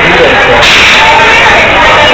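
Loud, distorted ride-station noise on the mine-train coaster, with voices in the mix and a burst of hiss starting about half a second in.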